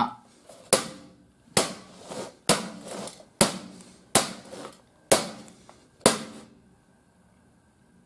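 Seven sharp strikes on a non-working disc player's metal case, evenly paced at just under one a second, each ringing briefly, with a hatchet blow the likely cause. They stop about six seconds in.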